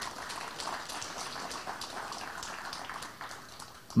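Audience applauding: a crowd's scattered clapping that starts right after the inauguration is declared and dies away just before the end.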